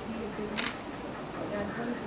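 A single camera shutter click about half a second in, over people talking in the room.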